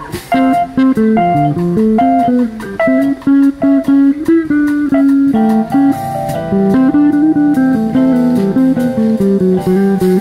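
Electric guitar playing a melodic line of single picked notes, with the band's drums and cymbals behind it.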